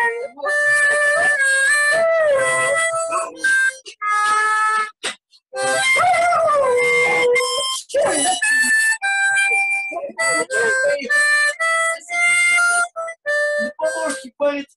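Harmonica played in short held notes and chords, with a dog howling along in smooth, sliding wails that stand out clearest about six to seven seconds in.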